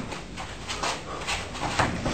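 Punches landing on a heavy punching bag, each with a quick, sharp exhaled breath, about every half second, the last one the loudest.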